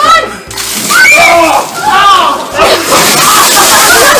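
Young men's voices calling out, then, about two-thirds of the way in, a heavy rush of ice water dumped from above splashes down over the group, with yelling over it.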